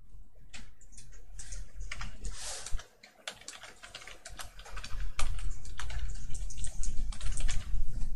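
Typing on a computer keyboard: a run of quick key clicks that pauses briefly about three seconds in, then picks up again more densely.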